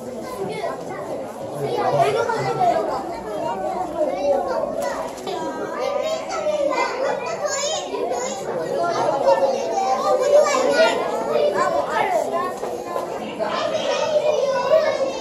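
A crowd of young children talking and calling out at once, many high-pitched voices overlapping throughout.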